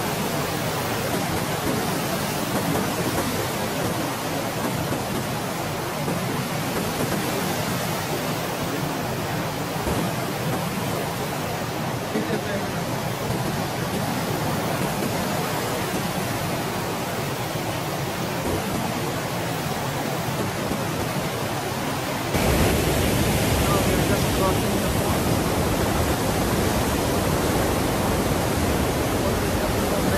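Rushing white water of Huka Falls, the Waikato River forced through a narrow rock channel, heard as a loud, steady wash of noise. About two-thirds of the way through it steps up louder, with more low rumble.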